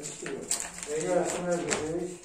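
Indistinct conversation: men's voices talking in low tones across a meeting table.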